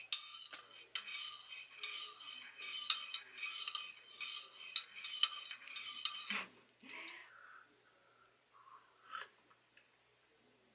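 Metal teaspoon stirring hot cocoa in a ceramic mug, a quick run of clinking and scraping against the mug's sides that stops about six seconds in. A few softer handling sounds and a single click follow.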